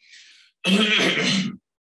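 A man clears his throat once, loudly, after a faint breath in.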